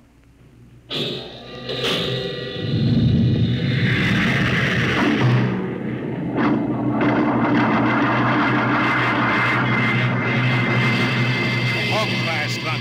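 Radio-drama sound effect of a rocket ship's jets firing for takeoff, mixed with music. After a quiet first second there is a sharp hit, then the roar builds over the next two seconds and holds loud and steady.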